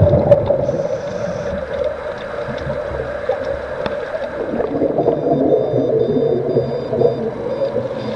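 Underwater sound picked up by a camera in its housing while scuba divers work nearby: a steady muffled rumble with crackling bubbles, loudest right at the start.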